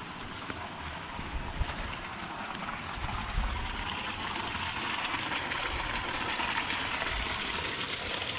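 Steady wind noise outdoors, with irregular low rumbles of wind buffeting the microphone, growing a little louder about three seconds in.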